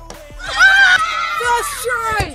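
A boy letting out a loud, high-pitched excited scream with a wavering pitch, starting about half a second in, over faint background music; it is a cheer for a successful trick shot.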